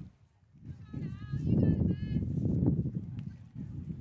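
Players' high-pitched voices calling and chanting at the ballfield between pitches, over a low rumbling noise. It starts about a second in and fades near the end.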